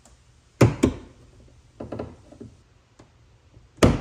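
Sharp clicks and knocks of a Rival gas hood strut's end fitting being pushed and rocked onto the mounting stud under a Jeep Gladiator's steel hood. Two loud clicks come about half a second in, a few lighter knocks around two seconds, and another loud click near the end.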